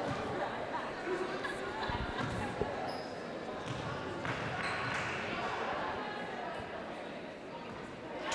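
A basketball bounced on a hardwood gym floor as a player readies a free throw, over a steady murmur of spectator voices in a large, echoing gym.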